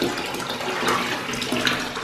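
Bath tap running steadily into a filling bathtub, the stream splashing and bubbling into the water.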